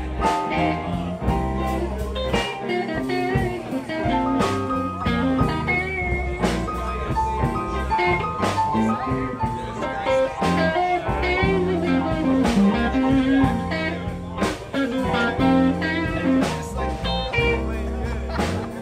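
Live band playing a blues-style tune: electric guitar lines with bent notes over bass guitar and a drum kit keeping a steady beat.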